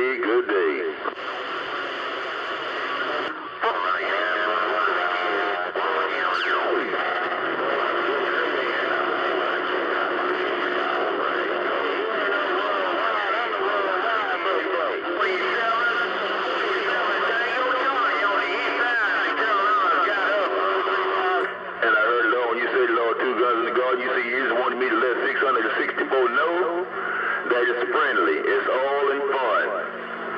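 CB radio receiving distant skip stations on channel 28: several voices overlapping and garbled, with steady tones whistling underneath. The signal changes abruptly a few times as stations key up and drop out.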